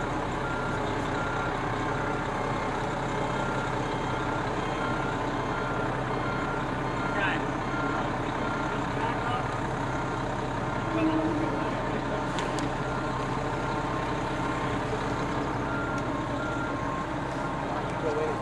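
Aerial ladder fire truck's engine running steadily while its backup alarm beeps at an even pace, a single repeated high tone, as the truck reverses slowly through a cone course.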